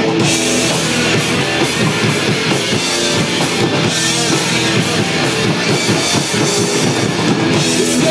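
Live rock band playing an instrumental passage between sung lines: electric guitars, bass guitar and a drum kit, loud and steady, with no vocals.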